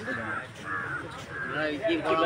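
A crow cawing about four times in quick succession, with people talking in the background.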